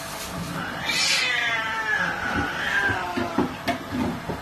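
A domestic cat gives one long meow of about two seconds, rising and then slowly falling in pitch, begging at feeding time. A few short knocks follow near the end.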